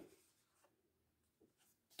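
Near silence, with the faint rustle of a picture book's paper page being turned by hand.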